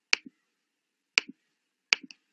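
Computer mouse button clicked three times. Each is a sharp press followed quickly by a softer release click.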